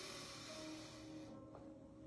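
A long, deep breath in, heard as a soft breathy hiss that fades out a little over a second in, over quiet background music holding sustained notes.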